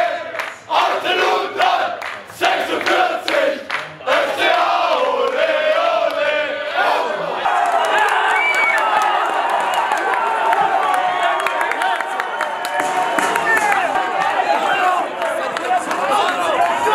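Crowd of football fans chanting together with clapping. After about seven seconds this turns into a dense din of many voices cheering and shouting at once.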